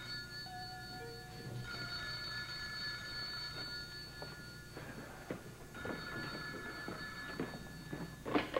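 Desk telephone ringing: two long rings, the first starting about two seconds in and the second about a second after the first stops, running to the end.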